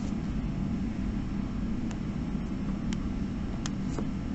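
Steady low background hum with three faint, sharp clicks of graphing-calculator keys being pressed, about two, three and three and a half seconds in.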